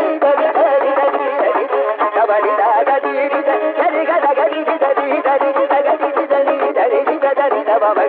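Carnatic concert music from an old All India Radio recording: a melody line with constant sliding ornaments, over rapid mridangam and kanjira strokes. The sound is dull and thin, with no treble or bass.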